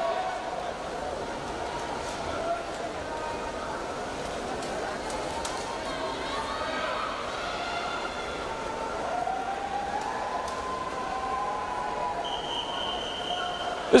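Indoor pool-hall crowd: many overlapping voices chattering in a reverberant hall. Near the end a steady high-pitched tone sounds for about a second and a half.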